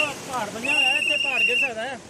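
A person talking, with a steady high-pitched whistle tone over the voice that holds for about a second in the middle.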